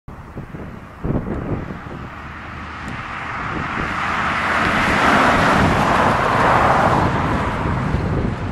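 1959 Ford Fairlane 500 Galaxie Skyliner with its 332 V8 driving past: engine and tyre noise grow louder as it approaches, are loudest as it passes about five to seven seconds in, and then begin to fade. A short thump of wind on the microphone comes about a second in.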